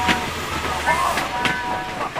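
A train whistle toots in short steady chords, twice, with a voice gasping and crying out between the toots.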